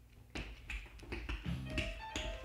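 Recorded music for a children's dance song starting up: a sharp tap about a third of a second in, a few lighter taps after it, then held instrumental notes coming in near the end.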